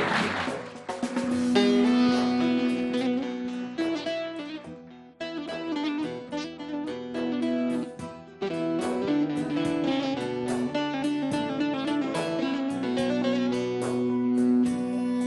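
Bağlama (Turkish long-necked saz) playing a song's instrumental introduction in quick plucked notes over a held low note, with band accompaniment. Applause dies away in the first second.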